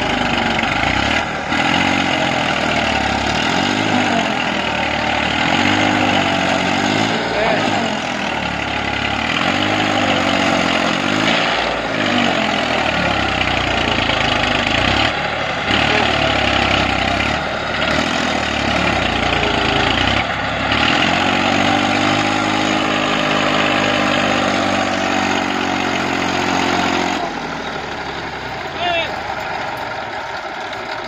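Massey Ferguson 1035 tractor's three-cylinder diesel engine revving hard under load as the rear wheels spin in loose sandy soil with a seed drill hitched behind; the pitch rises and falls repeatedly. It settles back and goes quieter near the end.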